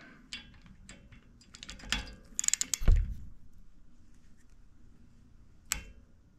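Torque wrench with a crowfoot adapter being worked on an adjustable ball joint's adjuster to set its 10 ft-lb preload: light metallic clicks and ratchet ticks, a cluster of them with a knock about three seconds in, and one sharp click near the end.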